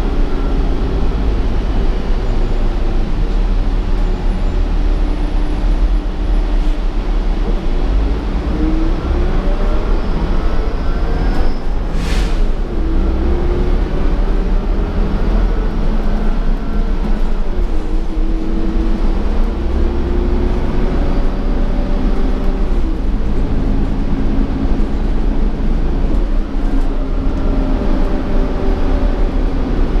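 Cabin sound of a 2015 Gillig Advantage transit bus underway: a steady low road rumble with drivetrain whines that rise and fall in pitch as the bus speeds up and slows. A short sharp burst of noise comes about twelve seconds in.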